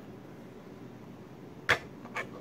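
A ring-pull tin of tuna flakes being opened: one sharp, loud click near the end as the tab cracks the lid's seal, over a steady low room hum.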